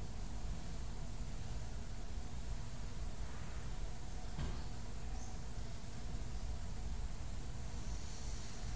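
Quiet room tone: a steady low rumble and hiss with no music playing, and one faint click about four seconds in.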